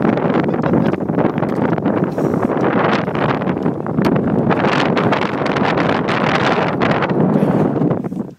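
Loud, uneven wind buffeting the microphone, a rough rushing noise.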